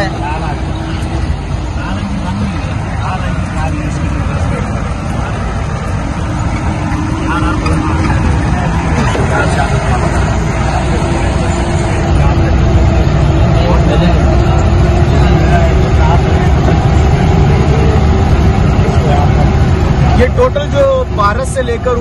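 4x4 jeep engine running steadily with rumble and rattle from a rough gravel mountain track, heard from inside the cab. It gets a little louder about halfway through.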